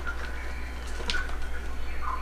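Steady low hum with a few faint rustles and ticks from Hoya vines and leaves being handled.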